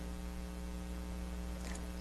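Steady electrical mains hum: a low buzz with its evenly spaced overtones, carried on the recording during a pause in speech.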